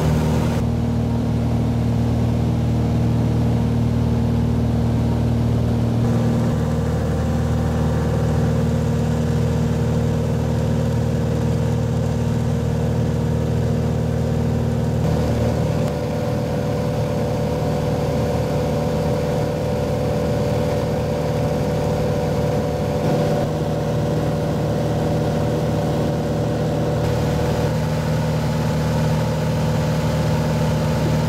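Light aircraft's piston engine and propeller heard from inside the cabin in cruise: a steady drone with no change in power, its tone shifting slightly a few times.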